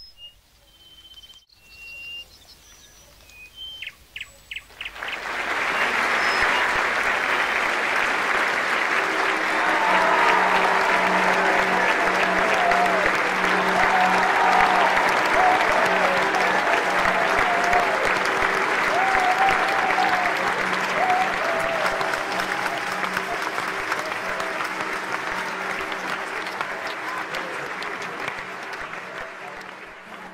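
Large crowd cheering and applauding. It swells in about five seconds in after a few faint high chirps and then holds steady, with shouting voices over it.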